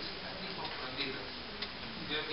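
A man's voice speaking quietly through a lectern microphone, with a few faint clicks.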